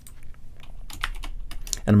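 Computer keyboard keys typed in a few separate clicks as a character is entered into a spreadsheet formula. A man's voice starts near the end.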